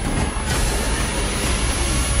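Dense, loud sound-effects mix of a giant-robot battle scene: a continuous heavy rumble with metallic clatter and a deep low end.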